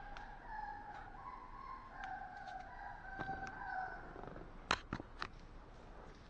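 Puppy whining: a string of high, wavering whimpers that step up and down in pitch, ending about four and a half seconds in. Three sharp clicks come near the end.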